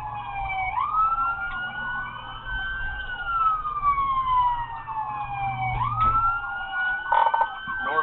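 Police car siren in wail mode, its pitch sliding slowly up and then down about every five seconds, with a second siren overlapping at a higher pitch. Patrol car engine and road noise run underneath and drop away about six seconds in.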